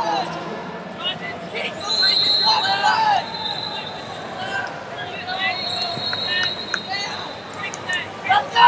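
Wrestling shoes squeaking on the mat, with shouting voices in a large arena. Two long, high, steady tones come in, about two seconds and again about five and a half seconds in.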